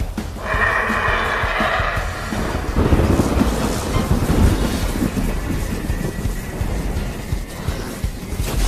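Soundtrack music with animated thunder-and-lightning sound effects: a dense low rumble with crackles sets in about two and a half seconds in.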